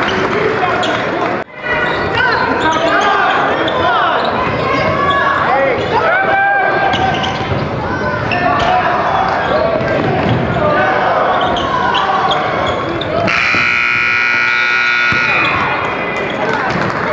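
Basketball game in a gym: sneakers squeak on the hardwood court and the ball bounces over crowd noise. Near the end a scoreboard horn sounds for about two seconds.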